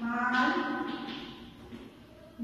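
A woman's voice holding out one syllable for about a second and then trailing off.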